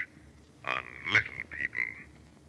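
Short croaking vocal sounds from a person's voice: one burst about two-thirds of a second in, a sharper one just after the first second, and a shorter one near the end, with near silence between.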